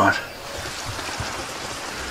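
Light rain falling steadily, an even hiss with no distinct drops standing out, as a thunderstorm morning begins.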